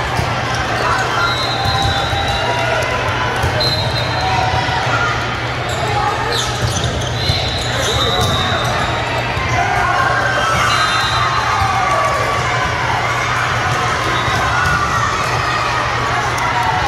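Echoing din of a busy indoor volleyball tournament hall: many voices talking and calling over one another, with volleyballs being hit and bouncing on the courts. Several short high-pitched notes sound now and then, over a steady low hum.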